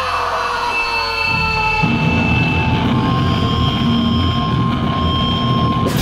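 Live band noise between songs: distorted electric guitar and bass droning with held amplifier feedback tones, the low end thickening about a second and a half in. Drums and cymbals crash in right at the end as the song starts.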